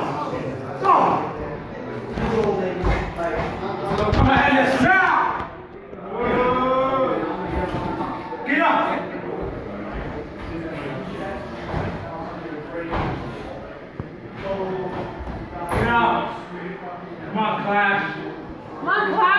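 Wrestlers' bodies hitting the ring mat in a couple of heavy thuds about three and four seconds in, among scattered shouts from a small crowd in a hall.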